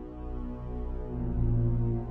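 Dark, low droning intro music of sustained tones, growing louder a little past halfway through.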